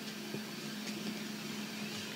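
Low room tone: a faint steady hum over light background noise, with a couple of soft ticks in the first second.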